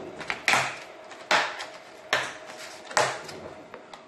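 A cutting board laid over brine in a plastic tub being pressed down, giving four sharp knocks evenly spaced less than a second apart, each fading quickly.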